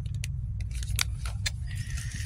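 A plastic-wrapped pack of pads handled on a metal wire shelf: a few short crinkles and clicks over a steady low rumble.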